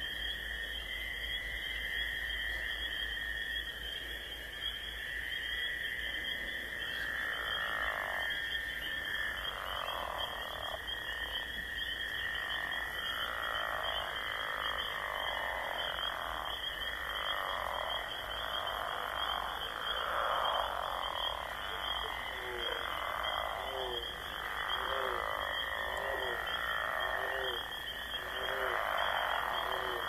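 Night chorus of animal calls: a steady high trill throughout, with a call repeating about once a second from about eight seconds in, and short, lower chirps joining in the last third.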